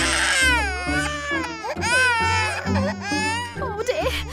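Baby crying in long wails that rise and fall in pitch, over background music.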